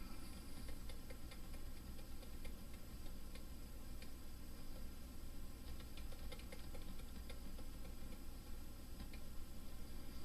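Faint, irregular clicking of a computer mouse, scattered light ticks over a low steady hum.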